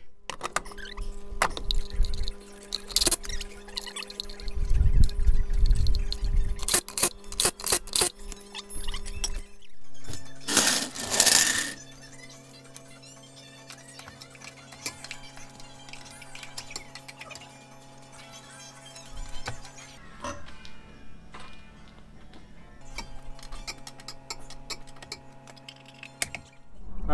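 Background music of long held notes that changes chord a few times, with scattered clinks and knocks and a short, louder rushing noise about ten seconds in.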